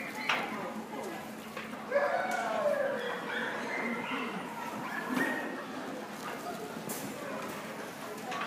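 Indistinct voices of people talking, with a dog barking among them.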